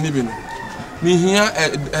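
A rooster crowing once, starting about a second in.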